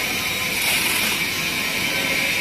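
BOPP tape slitting and rewinding machine running: a steady mechanical noise with a constant high whine, and a brief high hiss just under a second in.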